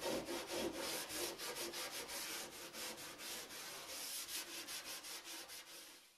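Scrub sponge rubbed hard back and forth on a stainless steel stovetop, an even run of quick scratchy strokes, scouring off the last baked-on grease spots loosened by oven cleaner.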